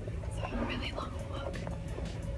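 A woman speaking softly, close to a whisper, over a steady low rumble.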